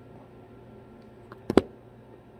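Quiet room tone broken by a few short, sharp clicks or knocks about a second and a half in, the last one the loudest.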